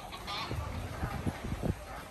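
Busy pier ambience: irregular footsteps on concrete from a group of passengers walking with luggage, over faint background voices, with a short pitched tone right at the start.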